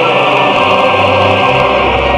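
A choir singing a North Korean patriotic song with sustained instrumental accompaniment. The bass notes move under long held vocal chords.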